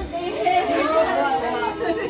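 Several people talking and exclaiming at once, their voices overlapping.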